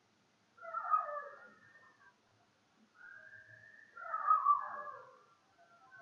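Two drawn-out animal calls with wavering pitch, the second longer than the first.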